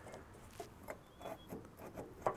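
Faint handling sounds: a few light taps and some rubbing as a small tool is placed and moved against the steel tube frame.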